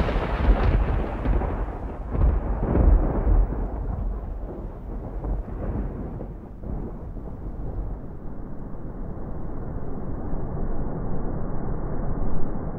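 Deep, muffled rumbling noise, loudest at the start. The highs die away over the first few seconds, leaving a steady low rumble.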